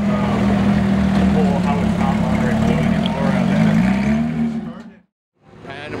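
Porsche 911 GT3 RS flat-six running at low revs as the car pulls slowly away, steady with a slight dip about four seconds in, with people talking over it. The sound cuts off about five seconds in.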